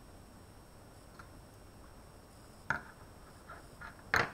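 Quiet room with a low steady background and a few faint ticks, then one sharp click about two-thirds of the way through, as of a small object handled on the lab bench.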